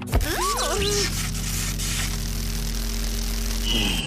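Cartoon sound effect of lab equipment shorting out: a sudden loud electrical buzz and crackle over a steady low hum, which holds level until near the end.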